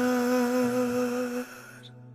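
Male vocalist holding the long final note of a song over a sustained backing chord. The voice stops about one and a half seconds in, leaving only the faint chord and a low hum as the song ends.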